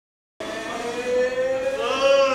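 A sustained pitched tone with overtones that starts abruptly just under half a second in, holds fairly steady, then glides upward near the end.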